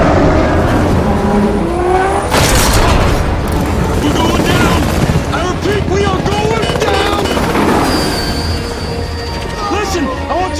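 Action-film battle sound mix: a heavy boom about two seconds in, with helicopter noise, a music score and men shouting.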